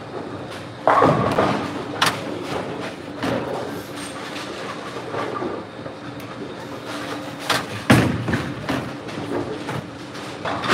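Bowling alley sounds: the steady rumble of balls rolling down the lanes, broken by loud crashes and knocks of pins and balls, the loudest about a second in and again just before eight seconds.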